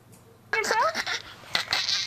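Young children's high-pitched voices and squeals, sliding up and down in pitch, starting about half a second in after a brief quiet.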